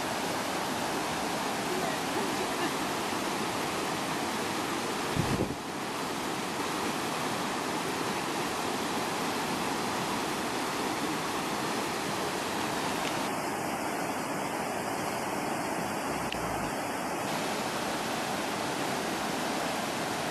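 Rishi river rapids rushing over rocks, a steady, unbroken roar of white water, with a brief thump about five seconds in.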